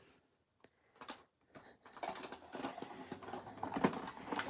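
Card stock and small crafting tools being handled at a table: a few separate soft clicks, then from about halfway a run of small, irregular taps and rustles.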